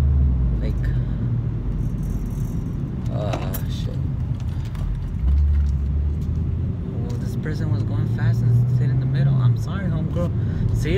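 Low, steady rumble of a car's engine and road noise heard inside the cabin while driving, with a brief murmur of a voice about three seconds in.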